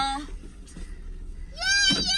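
Speech in a moving car: a voice ends at the start, then after a short lull a high-pitched, sing-song voice begins about one and a half seconds in, over the low steady rumble of the car cabin.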